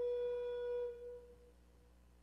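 Wooden recorder holding one long, steady final note for about a second, which then dies away: the last note of the piece.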